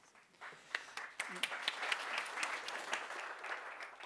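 Audience applauding. It builds up about half a second in and tapers off near the end.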